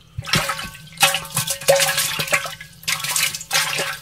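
Water splashing and sloshing in a basin in three bursts, the longest in the middle.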